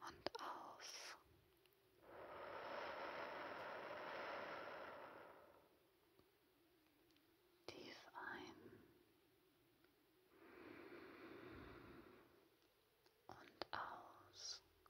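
A woman breathing slowly and deeply close to a sensitive ASMR microphone. A long breath starts about two seconds in and a softer one about ten seconds in, with small mouth clicks at the start, in the middle and near the end.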